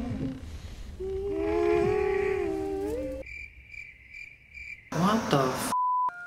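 A long, wavering hum, then a high chirping that pulses two to three times a second, ending with a short steady beep.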